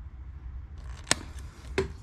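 A hand crimping tool being handled: one sharp click about a second in and a softer tick near the end, over a low steady hum.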